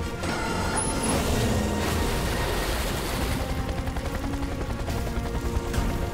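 Cartoon action score mixed with a dense crackle of sound effects, with a broad rushing sound from about one to three seconds in.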